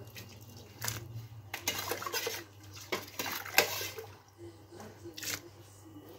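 A metal ladle clinking against a stainless-steel pot while harira broth is ladled out, with liquid sloshing and dripping; five or six separate sharp clinks, a second or so apart.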